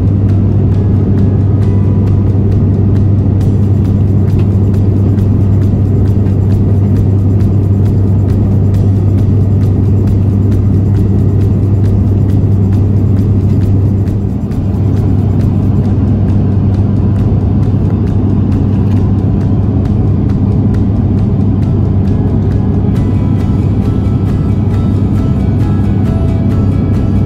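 Loud, steady drone of an airliner cabin in flight, a constant low hum of the aircraft's engines that dips briefly about halfway through.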